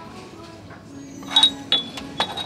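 Glazed ceramic figurines clinking together, two light chinks close together about a second and a half in.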